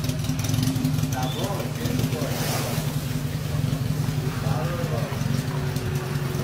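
Small pickup truck's engine running with a steady drone as it moves slowly under a heavy load. Faint voices call out about a second in and again near the end.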